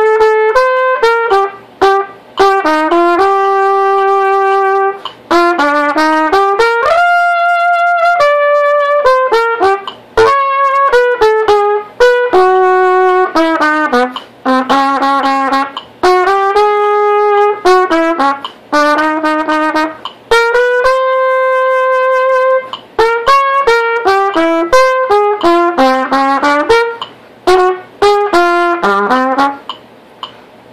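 Solo trumpet sight-reading a Latin jazz audition etude in straight eighths at 112 beats per minute: a melody of held notes and quick runs, broken by short pauses for breath. A metronome clicks faintly underneath.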